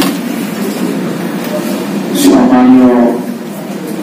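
A man's voice through a hall microphone, drawing out one long low syllable about two seconds in, over a steady background hum of the room.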